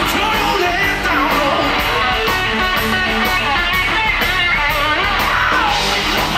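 Live rock band playing: electric guitar, electric bass and drum kit keeping a steady beat, with a male lead vocal.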